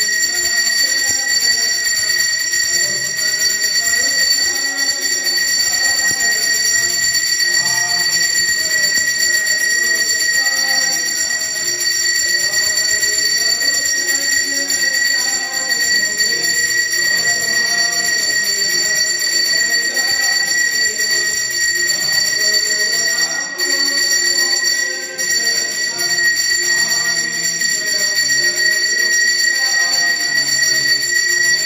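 Temple bell ringing steadily and without a break during an aarti, over softer devotional music.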